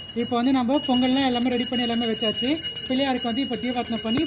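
A brass puja hand bell ringing continuously in quick, even strokes, over a voice chanting in long held notes.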